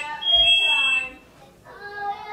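Household smoke alarm sounding, set off by smoke from frying fish: a shrill beep of two high steady tones that stops about a second in.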